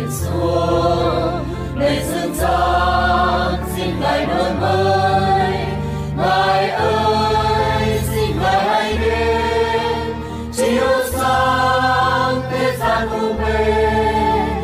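A choir singing a Catholic hymn calling on the Holy Spirit, phrase after phrase, over steady low accompaniment notes that change about every two seconds.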